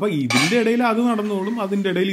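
A metal lid set down on a cooking pot, clinking about half a second in, under a man's voice talking.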